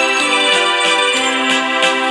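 Live instrumental music: sustained organ-toned chords from an electronic keyboard, with electric guitar and a steady beat.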